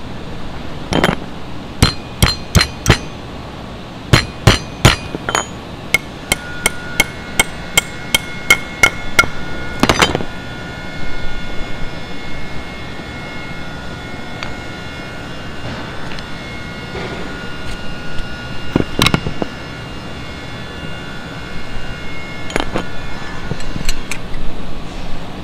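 A hammer striking a steel chisel: runs of sharp blows, about three a second, through the first ten seconds, the last one the loudest, with a metallic ringing tone hanging on between them. Two more single blows come later.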